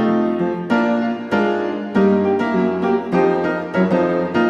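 Background piano music: chords and notes struck at a steady, unhurried pace, each ringing out and fading before the next.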